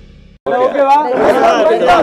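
The last note of a news intro jingle fades out, then after a brief silence speech starts abruptly: a man talking with other voices chattering around him.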